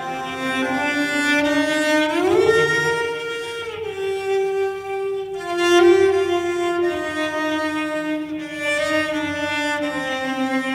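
Background music of slow, sustained bowed-string notes, with one note sliding up in pitch about two seconds in.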